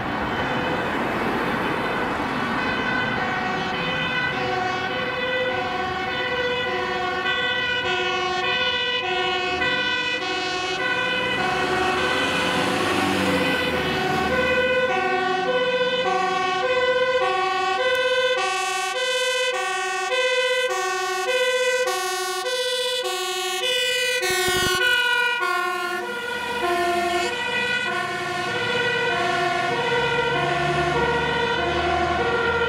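Fire engine's two-tone siren alternating high and low about once a second, over the truck's engine and tyre noise as it approaches and passes. The pitch drops slightly once it has gone by.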